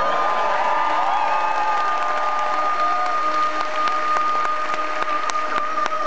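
Concert audience applauding and cheering, with scattered claps, over a singer's long, steady held high note.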